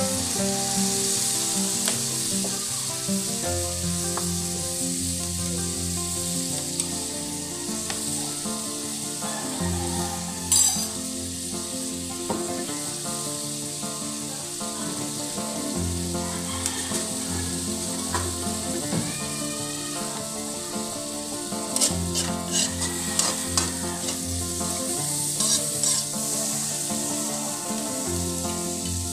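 Chopped pork and aromatics sizzling steadily in a hot aluminium wok after a splash of fish sauce, with a few sharp clicks of the spatula against the pan.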